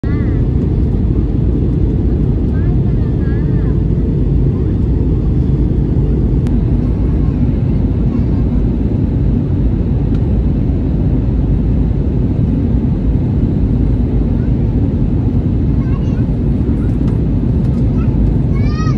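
Steady, loud low rumble of engine and airflow noise inside an airliner cabin on approach. A thin steady hum drops out about six seconds in, and faint voices come through now and then.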